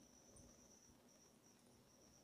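Near silence: quiet room tone with a faint, steady high-pitched tone.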